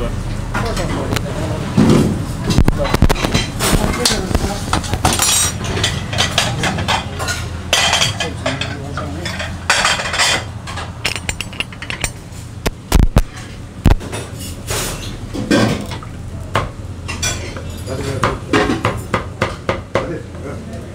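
Porcelain plates and metal utensils clinking and clattering as a cook works the serving counter, with the meat on a wooden carving board. Two heavy knocks stand out about two-thirds of the way through.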